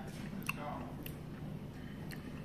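A person chewing a bite of croissant topped with crystallized hot honey, with a couple of small mouth clicks about half a second and a second in.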